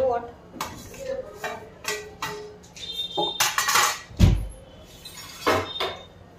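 Steel utensils clinking and scraping: a spoon knocking and scraping a steel plate and kadai as flour mixture is tipped in. There is a heavy thump about four seconds in.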